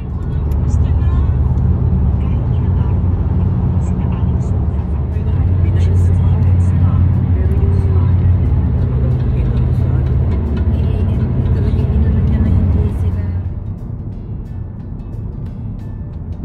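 Steady low road rumble of a car driving, heard from inside the cabin, easing off near the end, with music and voices over it.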